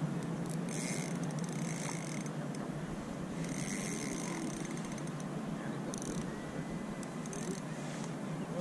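Spinning reel ratcheting in about five short bursts while a hooked trout pulls against the bent rod.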